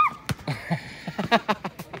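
A quick series of knocks as a thrown ball strikes the basketball hoop and the metal-mesh ball wall and bounces, some knocks with a short ring, over a child's shout.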